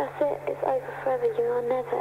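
A voice on a 1993 dance-music cassette mix, pitched and drawn out, with a steady low hum beneath it. Little of the beat comes through.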